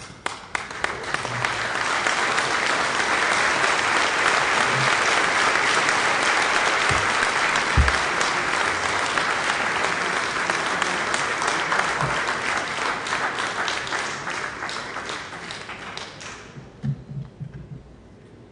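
Audience applauding in a hall. The applause builds over the first couple of seconds, holds steady, then dies away about sixteen seconds in, with a few last claps after.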